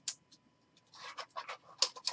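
Trading cards being handled, card stock and plastic sliding and scraping against each other: one short scrape at the start, then a quick run of scrapes and rustles from about halfway through.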